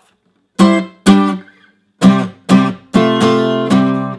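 Five-string steel-string acoustic guitar in open G tuning (G D G B D), strumming barred chord shapes at the 12th fret: two sharp strums about half a second apart, a pause, then a run of four strums with one chord held ringing.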